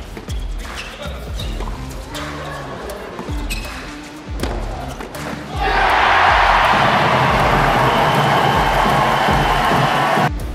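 Tennis rally: a series of sharp racket strikes on the ball over backing music. About five and a half seconds in, the point ends and the crowd breaks into loud applause and cheering, which holds to the end.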